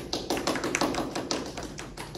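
Brief applause from a small group of people clapping: quick, irregular claps.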